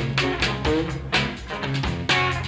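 Live blues-rock band playing: guitar lines over bass and a steady drum beat.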